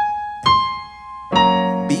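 Piano melody notes played one at a time: a single high note struck and left to ring, then about a second and a half in the right-hand B-flat struck together with a low left-hand chord, which ring on together.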